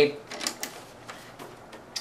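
Handling noise from a plastic NAS enclosure being turned over in the hands: a few light clicks and taps in the first second, then faint rubbing.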